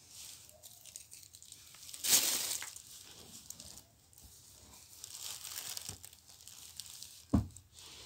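Plastic trash bag rustling and crinkling as it is handled, loudest in a burst about two seconds in and again around the middle. A short, sharp thump near the end.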